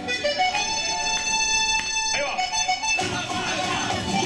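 Live cumbia band music: a sustained, held lead melody, with a fuller band of bass and percussion joining about three seconds in.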